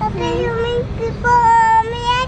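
A young child singing in a high voice, with a few short notes followed by a long held note in the second half.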